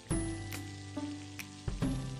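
Melted butter sizzling on a hot flat pan, under background music whose held notes come in near the start and again shortly before the end.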